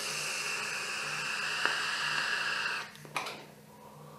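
A long draw on a vape through a top-airflow Intake Dual rebuildable tank atomiser: a steady hiss of air pulled through the tank for almost three seconds, stopping abruptly. A short breath and a quieter exhale of vapour follow.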